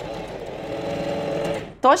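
Singer Facilita Pro 4411 domestic sewing machine, run by foot pedal, sewing a straight stitch through two layers of cotton tricoline with a steady hum. It stops about a second and a half in as the seam nears a corner.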